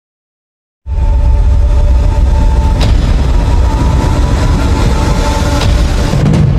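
Silence, then about a second in a loud, deep rumble starts abruptly and holds steady, with a faint steady tone above it and a couple of brief clicks.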